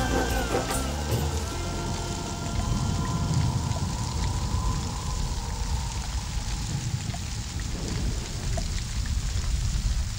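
The tail of a Bollywood song breaks off in the first second or two. Steady heavy rainfall follows, with a deep rumble and a faint held background-music tone.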